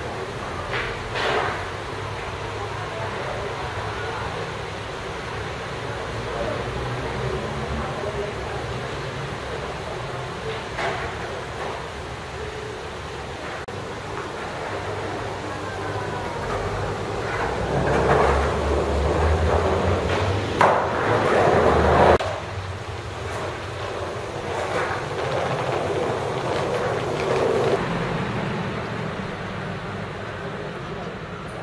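Steady outdoor city noise with distant traffic. It swells louder with a low rumble for several seconds past the middle, then drops off suddenly, and a few sharp knocks stand out.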